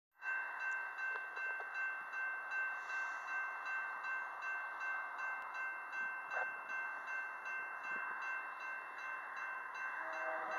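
Railroad grade crossing bell ringing steadily, about two strokes a second, warning of an approaching train.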